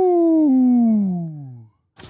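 A man's long drawn-out 'ooooh' exclamation of shock, sliding steadily down in pitch and fading out near the end.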